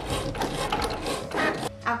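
Cricut Maker 3 cutting machine running as it cuts smart vinyl without a mat: the carriage and rollers whir with a quick run of small mechanical clicks, breaking off near the end.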